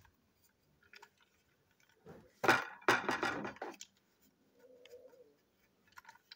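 Plastic toy train parts being handled: a few small clicks, then a loud scraping, crunching rattle about two seconds in that lasts a little over a second.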